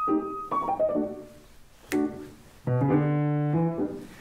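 Grand piano played: a held high note, then a quick descending run about half a second in, a short chord near two seconds, and a loud held chord that dies away just before the end.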